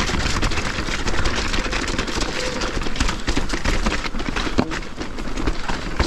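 Electric mountain bike rolling fast over a stony trail: continuous tyre crunch and clatter of rocks, with many quick rattles and knocks from the bike over rough ground.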